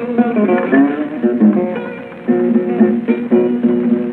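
Solo acoustic blues guitar played with a bottleneck slide, picking a short instrumental passage between sung verses, with gliding notes. The playing thins out briefly about two seconds in, then picks up again. The sound is dull and lo-fi, with no high treble.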